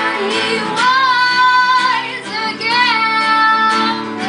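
A woman singing live to her own strummed acoustic guitar, holding two long notes about a second each.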